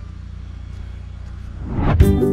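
A steady low rumble, most likely wind on the camera microphone outdoors. About a second and a half in, a rising whoosh swells into the start of music.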